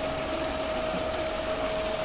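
Paddle-wheel aerator running on a prawn pond, its wheels churning and splashing the water into a steady hiss with a constant tone over it. It is aerating the pond to supply oxygen to the prawns.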